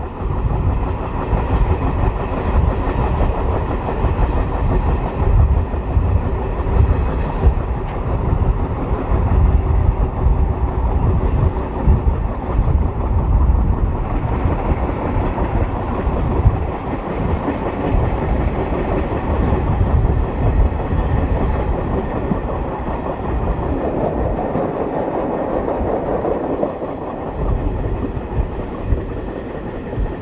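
MLW diesel locomotive CP 1557, with its Alco-design engine, working under load as it hauls a passenger train. It is heard together with wheels clicking over rail joints and the rumble of the coaches. A brief high, falling squeal comes about seven seconds in.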